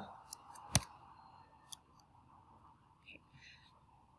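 Quiet room tone with one sharp click a little under a second in and a couple of fainter clicks, the kind made by a mouse button or key as the slide is advanced.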